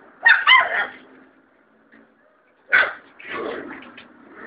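Young puppies yelping in three bursts: a quick cluster of high yelps just after the start, a single short yelp near three seconds, then a longer, rougher whimper just after it.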